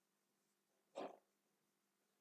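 Near silence: room tone, with one short, faint sound about a second in.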